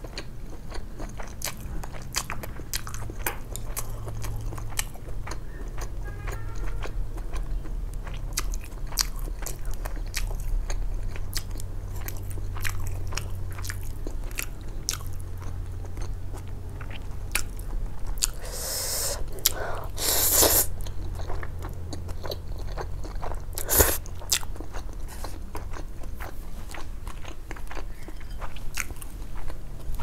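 A person eating spicy stir-fried instant noodles: wet chewing with many small mouth clicks and smacks throughout. A few louder rushing sounds come about two-thirds of the way in.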